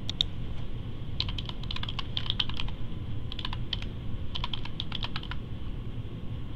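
Computer keyboard typing in three quick runs of keystrokes, after a single click near the start.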